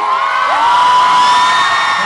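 Concert crowd cheering and screaming as the song ends, with many high-pitched shrieks held over one another.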